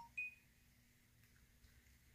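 Near silence: room tone with a faint steady hum, broken only by one brief high-pitched beep just after the start.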